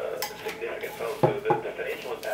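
Two sharp clinks of hard parts knocking together, about a quarter-second apart, a little past the middle, as the viewfinder and its accessories are handled in their cardboard box. A man's voice from a TV in the background runs underneath.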